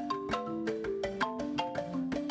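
Musser marimba played by several players at once: a quick, steady stream of mallet notes in several parts together.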